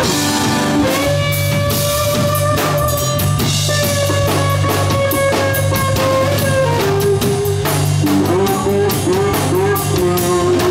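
Live blues band playing an instrumental passage: an electric guitar lead holds long sustained notes, steps down about seven seconds in, and bends several short notes near the end, over a steady drum kit beat and bass guitar.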